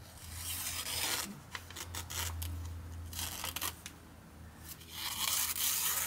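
Freshly stropped Spyderco Pacific Salt folding knife slicing through a glossy paper flyer in a paper-cutting sharpness test. It makes three hissing slicing passes, the last near the end the loudest. The edge cuts the paper cleanly.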